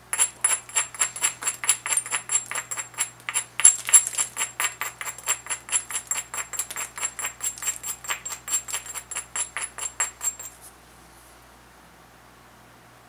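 A hand-held stone worked in quick, light strokes along the edge of a banded obsidian biface, abrading the edge. It makes a fast, even run of sharp clicks, about five a second, which stops about ten and a half seconds in.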